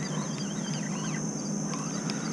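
Birds chirping in short calls against a steady outdoor background hiss, with a thin steady high-pitched whine.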